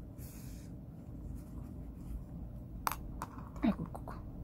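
Yarn being drawn through crocheted fabric with a tapestry needle, a soft rustle just after the start, then two light clicks about three seconds in. Near the end comes a brief sound falling in pitch, the loudest moment.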